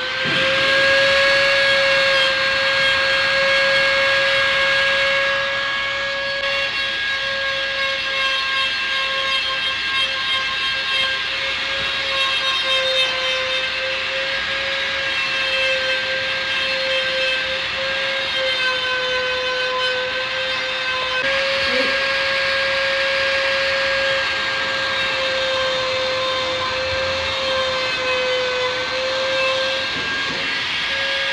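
Dremel rotary tool with a small sanding drum running at high speed. It gives a steady high whine while it sands the raised ridges left by clipped branches flush on a green bamboo pole. The pitch wavers slightly as the drum bears into the cane, over a gritty sanding hiss.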